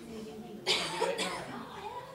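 A person coughing, with a sudden cough about two-thirds of a second in and a shorter one just after, over faint murmured voices.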